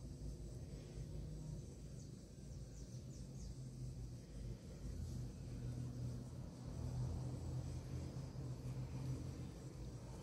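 Faint, steady low rumble of background noise.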